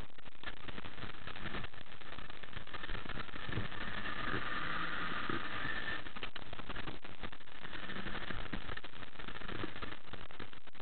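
A RIB's engine running steadily at low speed as the boat edges up to its trailer, mixed with a constant rushing noise.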